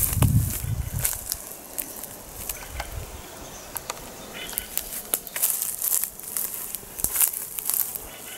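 Footsteps through freshly mown grass: irregular crackling and rustling of cut stalks underfoot, with a few low handling bumps, the loudest in the first second.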